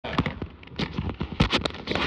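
Irregular knocks, clicks and rustles of a camcorder being handled, with a knit sleeve brushing right against it and its microphone.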